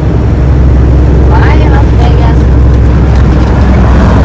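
Steady low drone of a semi truck's diesel engine and tyres, heard from inside the cab while cruising at highway speed.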